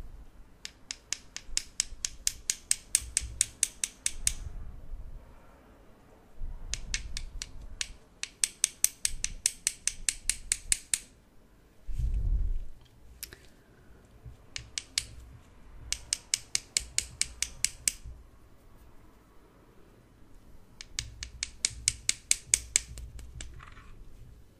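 Scissors snipping rapidly close to the microphone, in runs of quick sharp clicks a few seconds long with short pauses between them. Soft low handling noise sits underneath, with a dull thump about halfway through.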